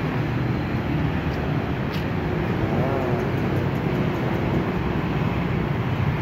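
Steady street traffic noise, motorbike and car engines running past, with a motor scooter passing close near the end.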